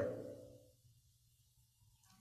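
Near silence: a man's spoken question dies away in the first half second, leaving room tone with a faint low hum.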